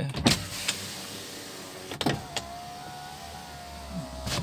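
Nissan Grand Livina driver's-side power window motor running with a steady whine as the glass travels. It stops with a click about two seconds in, then runs again. This is the one-touch auto window working again after its switch memory was reset.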